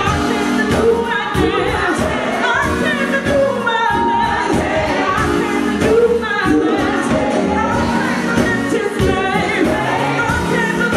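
Live gospel song: a woman singing lead into a microphone over a band with drums, with backing voices joining in.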